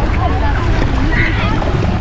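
Wind noise on the microphone over shallow seawater washing and splashing around the legs of people wading ashore, with scattered voices of people on the beach.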